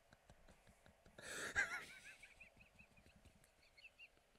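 A man's helpless, mostly silent laughter: a sharp wheezing rush of breath a little over a second in, then a string of thin, high-pitched squeaks.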